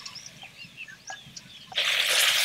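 Small birds chirping faintly, then near the end a sudden loud sizzle as chopped tomatoes fry in hot tempering oil in a clay pot.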